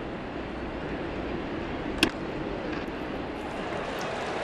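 Ballpark crowd ambience, with a single sharp crack of a baseball bat hitting a pitch about two seconds in.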